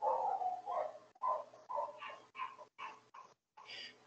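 A dog barking repeatedly, a quick string of short barks about two or three a second, faint and thin as if picked up by a participant's microphone on a video call.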